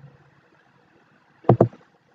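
A computer mouse clicking: a quick pair of sharp clicks, press and release, about one and a half seconds in, over faint room hiss.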